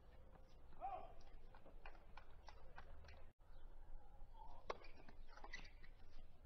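Faint hard-court tennis play: short sharp clicks of racquets striking the ball and the ball bouncing, with a brief voice cry about a second in and the loudest strike near five seconds.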